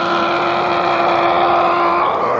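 Darts referee calling a maximum score over the microphone: the drawn-out "one hundred and eighty" call, its last syllable held on one long steady note.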